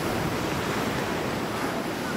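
Wind and surf on a choppy open sea: a steady rushing noise of wind and breaking water.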